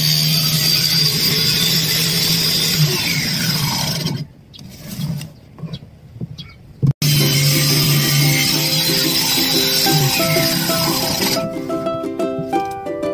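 Homemade table saw running and crosscutting plywood boards on a sled, twice: a steady saw run of about four seconds, a pause of about three seconds, then a second run of about four seconds. Plucked-string music starts near the end.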